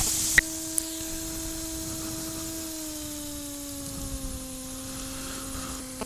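P&M Quik flexwing microlight's engine running at low power while lined up for take-off, heard as a steady hum through the headset intercom recording, drifting slightly lower in pitch. A short click comes about half a second in.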